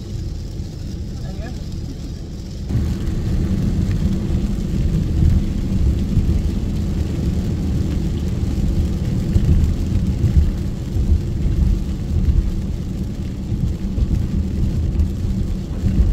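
Steady low road rumble of a car driving on a rain-soaked road, heard inside the cabin. It grows louder about three seconds in.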